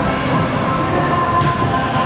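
Stunt scooter wheels rolling over a concrete skatepark floor: a steady rolling rumble with a thin, faint tone above it.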